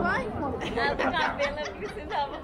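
Only speech: people talking around the microphone, with words that can't be made out.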